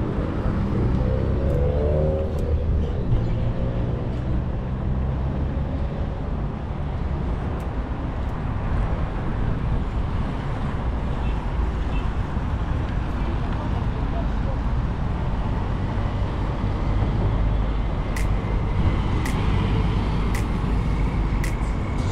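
Steady traffic noise of a busy city road, with vehicles running and passing and a continuous low hum.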